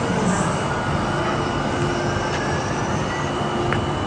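Steady background noise: an even rushing hum with a faint steady high tone over it.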